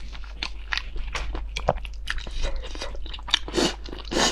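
Close-miked eating sounds of a person biting and chewing food: a quick, irregular run of short wet mouth clicks, with a louder, longer burst of noise about three and a half seconds in.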